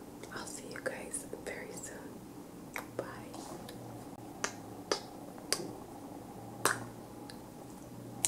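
Close-miked kissing sounds: soft whispered breaths at first, then a series of about seven sharp lip smacks as air kisses are blown.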